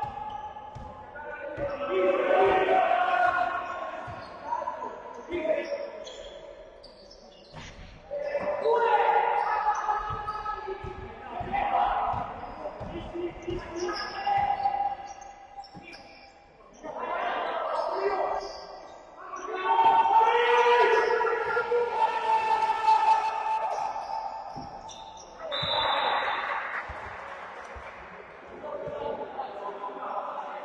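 Basketball dribbled and bouncing on a sports-hall floor during play, repeated short knocks, with indistinct shouts from players and the bench echoing through the large hall.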